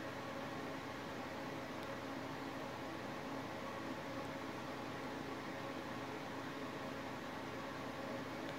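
Steady background hiss with a faint, even hum underneath, unchanging throughout.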